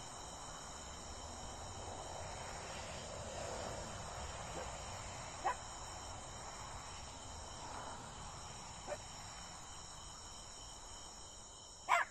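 Faint, steady high-pitched chorus of night insects such as crickets. A short sharp sound stands out about five and a half seconds in, and a fainter one near nine seconds.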